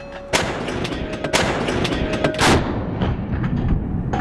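Main gun of a Stryker eight-wheeled armoured vehicle firing: a sudden loud blast about a third of a second in, then a long rolling rumble with two more sharp reports.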